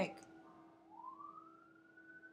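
A faint siren wailing, its single tone rising slowly and then levelling off high, over a steady low hum.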